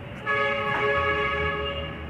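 A held chord of several steady tones, horn-like, comes in about a quarter second in, lasts about a second and a half and then fades, over a low steady hum.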